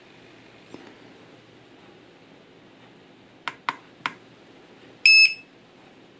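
Three quick clicks from the power button of a Hubsan Zino Mini Pro drone remote controller, then one short high-pitched beep from the controller as it is switched off to be restarted after its firmware update.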